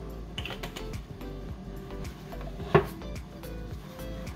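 Background music with steady held notes, over small clicks and taps of muffin cups being handled while they are greased. One sharp knock comes close to three seconds in.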